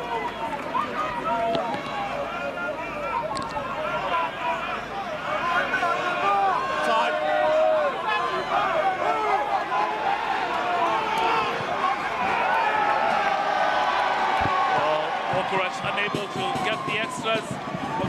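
Stadium crowd of rugby fans cheering and chanting, many voices at once, with a run of rhythmic beats near the end.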